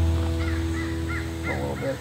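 Background music fading out while a bird calls in a quick series of short, repeated chirps.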